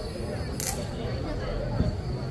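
Low murmur of a waiting crowd with a steady low rumble, broken by one short, sharp high click about half a second in and a brief low thump near the end.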